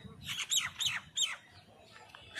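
A bird calling four times in quick succession, short calls about a third of a second apart that each drop in pitch.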